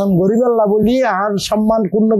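Speech only: one man talking without a break.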